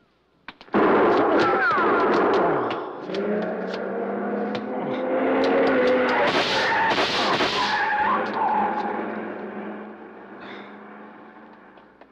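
Sound effects of a car racing away with squealing tyres and gunshots mixed in: the noise starts suddenly and loudly under a second in, then the engine fades away over the last few seconds.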